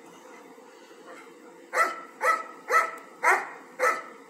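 A dog barking five times in quick succession, about two barks a second, starting a little before the halfway point.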